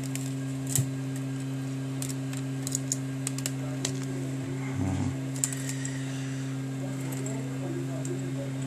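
Scattered light clicks and taps of metal tweezers and a pry tool against a smartphone's metal frame and display module as the module is detached, over a steady low hum.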